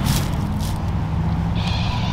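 A steady low engine hum, with a short higher hiss near the end.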